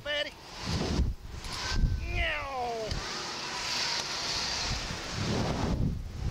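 Wind rushing and buffeting over a phone microphone on a Slingshot catapult ride, with gusts of low rumble. About two seconds in, a voice gives one drawn-out falling cry.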